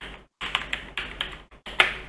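Computer keyboard typing: a run of separate keystrokes, about three or four a second.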